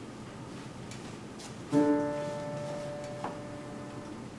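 Quiet room, then a single chord struck on a grand piano a little under two seconds in, ringing and slowly fading.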